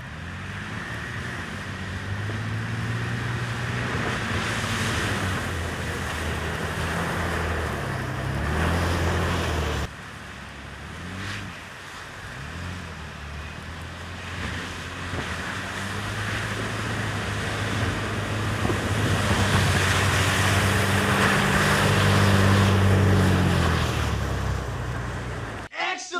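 Toyota 4Runner SUVs driving off along a snowy road, their engines rising and stepping in pitch as they accelerate, with a steady rush of noise underneath. The sound breaks off abruptly about ten seconds in, then builds again and is loudest near the end as a 4Runner comes closer.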